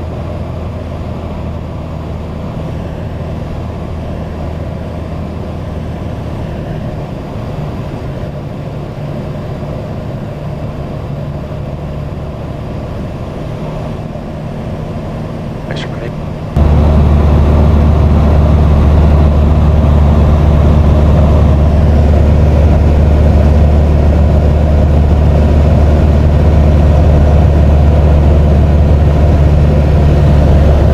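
Socata TB10 Tobago's four-cylinder Lycoming engine and propeller droning steadily, heard from inside the cockpit on landing approach. A little over halfway through, the sound abruptly becomes much louder and deeper.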